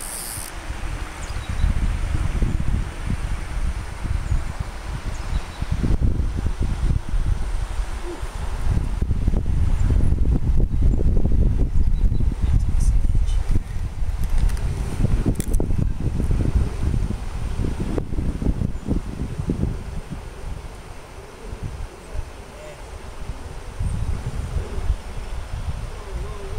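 Wind buffeting the microphone: an uneven low rumble that swells and falls in gusts, strongest through the middle and easing near the end.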